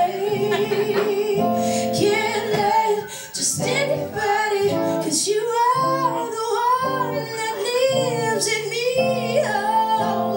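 A woman singing long, melismatic notes with vibrato over acoustic guitar chords, live.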